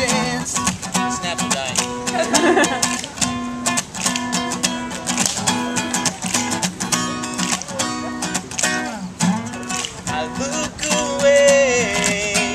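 Acoustic guitar strummed in a steady rhythm, with sung vocal lines over it at times, a phrase a couple of seconds in and another near the end.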